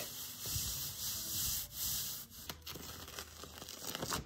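Palms rubbing rice paper down onto an inked gel printing plate, a soft swishing that swells with a few strokes in the first half. It goes quieter in the second half, with a few small crackles.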